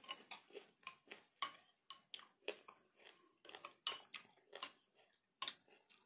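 A metal spoon stirring a milky drink in a stemmed glass, clinking against the glass in quick, irregular ticks, about three a second, with a short pause near the end.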